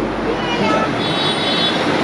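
People talking over a steady background din, with a brief high-pitched tone lasting about a second, starting about a second in.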